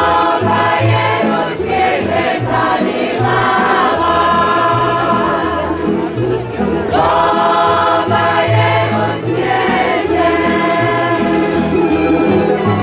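A group of women singing a Slavonian folk song in harmony, in phrases of a couple of seconds with short breaths between, over a tamburica band with a plucked bass line.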